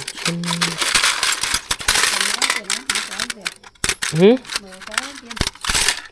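Keys and lock picks clinking and rattling as hands rummage through a shallow steel tool box, a quick irregular run of small metal clicks.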